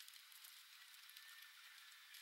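Near silence: a faint steady hiss with a few soft ticks.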